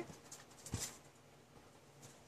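Faint handling of cardstock journaling cards: light paper rustle with one sharp tap just under a second in.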